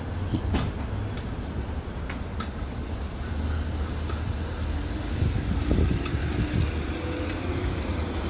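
Street traffic: a low steady rumble, with a faint engine hum of a passing vehicle rising in the second half, and a few light clicks early.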